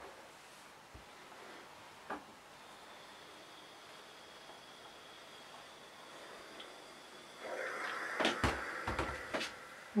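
Pressing fabric with a hand iron: mostly quiet with a few small clicks, then near the end about two seconds of hissing noise with several sharp knocks as the iron is moved and handled.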